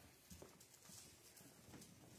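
Near silence: room tone with a few faint footsteps of dress shoes on a carpeted stage and steps.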